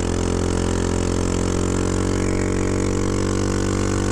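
Honda Ruckus scooter engine with a straight-pipe exhaust, running steadily under way at a near-constant pitch.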